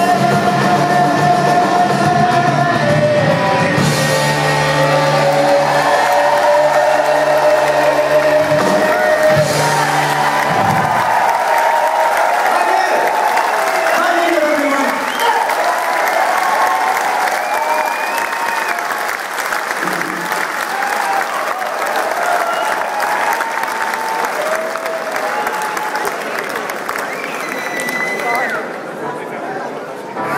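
Live rock band and singer ending a song on a long held chord and sung note, stopping about eleven seconds in. The audience then cheers and applauds, with whistles and shouts, easing off near the end.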